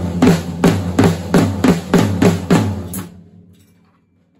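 Drum kit played in a rolling 'crab' groove, sticks moving between snare and tom over the bass drum at about three strokes a second, with the strokes almost flammed. The playing stops about three seconds in and the drums ring out and fade.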